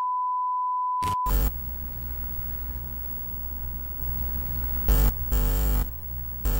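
A steady high test-pattern beep that cuts off about a second in, followed by glitchy electronic intro music with a deep bass and sudden loud bursts of static-like noise near the end.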